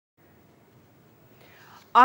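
Near silence at an edit: a moment of dead silence, then faint room tone, with a faint breath just before the newsreader's voice starts at the very end.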